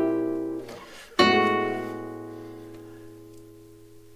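Nylon-string classical guitar: a close-voiced chord rings and fades, then a second chord is plucked about a second in and left to ring out slowly, the progression moving on to an A chord.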